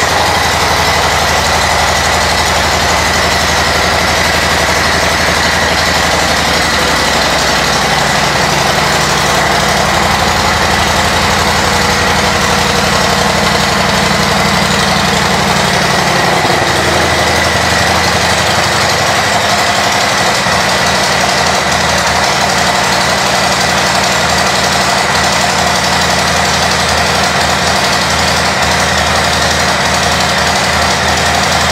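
Harley-Davidson Heritage Classic's Milwaukee-Eight 114 V-twin idling steadily through Cobra aftermarket pipes, just after being started; its low note shifts about halfway through.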